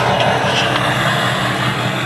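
Truck engine idling steadily, an even low hum with a wash of noise over it.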